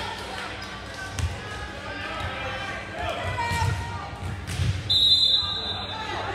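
Gym crowd and player voices with a few dull ball bounces on the hardwood floor, then a referee's whistle held for about a second near the end, the signal to serve.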